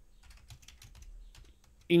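Computer keyboard being typed on: a quick, irregular run of light keystrokes as a terminal command is entered.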